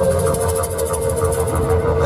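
A long wooden flute holding one steady note, amplified through a PA speaker, over a backing track with a low pulsing drone and a quick, even ticking rhythm high up.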